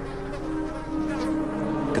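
Flies buzzing around a rhinoceros carcass, with held notes of soft background music underneath.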